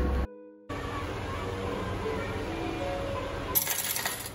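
Music playing in the background, and near the end a short metallic clatter of change coins dropping into a ticket vending machine's coin tray after a purchase.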